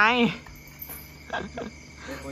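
Crickets chirring steadily: one continuous high-pitched trill that holds the same pitch throughout.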